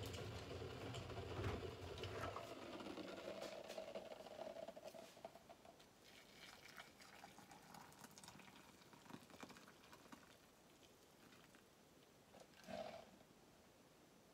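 Hot water poured from a kettle into a ceramic mug over a tea bag, fading out within the first few seconds. Faint small handling sounds follow, with one short louder splash-like sound near the end.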